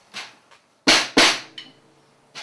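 Two strokes on a snare drum dampened with a sheet of paper on the head, about a third of a second apart, each leaving a short ring that dies away.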